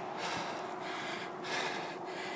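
Heavy breathing of a cyclist climbing a hill on a bicycle, close to the microphone, swelling and dipping about once a second.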